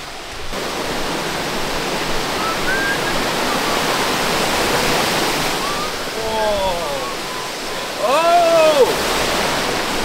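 Steady rush of a jungle stream and small waterfall pouring over rocks. A few short voice calls rise over it, the loudest about eight seconds in.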